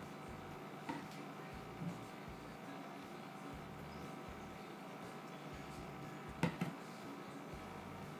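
Quiet room hum with a few light knocks of plastic pouring pitchers set down on a granite countertop, the loudest a quick double knock about six and a half seconds in.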